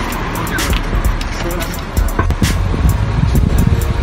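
Wind rumbling on a phone microphone and street traffic noise while cycling, with a few knocks and rattles from the bike, under background music.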